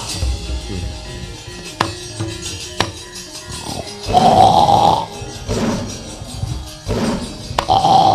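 Gamelan music accompanying a wayang kulit fight scene, cut by a few sharp knocks from the dalang's keprak. There is a loud vocal shout from about four to five seconds in, with more short cries after it.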